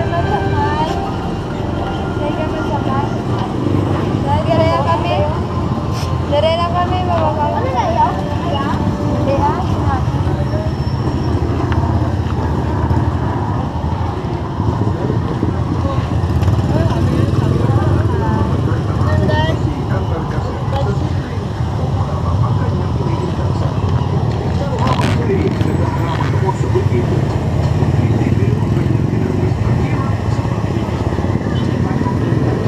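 Busy street-market ambience: several people talking around the microphone over a steady low rumble of motorcycle traffic.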